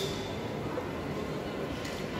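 Steady background murmur of a mall food court, with two light clicks of a metal fork against the plate: one at the start and a fainter one near the end.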